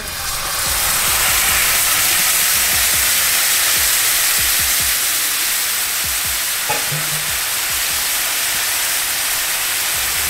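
Sauced shrimp sizzling in a hot frying pan, the sizzle swelling over the first second as they hit the pan and then holding steady.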